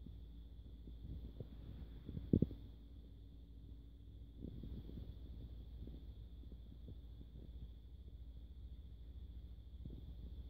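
Cats eating from a plastic food tray: faint scattered clicks of chewing and lapping over a low steady rumble, with one short knock about two and a half seconds in.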